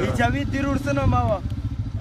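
A man's voice chanting a verse with drawn-out, sliding pitch, which breaks off about one and a half seconds in. A steady low rumble runs underneath.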